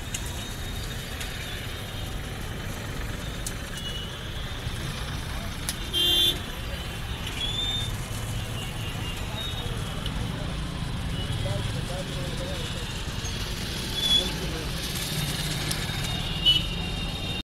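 Road traffic rumbling steadily, with a vehicle horn honking briefly about six seconds in and a shorter high beep near the end.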